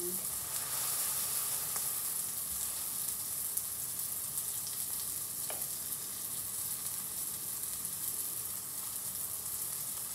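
Beef burger patties sizzling steadily in a frying pan, with a couple of faint ticks.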